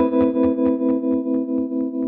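Electric guitar chord ringing out through a Gibson Falcon 20 combo amp, its tremolo pulsing the volume evenly about six times a second.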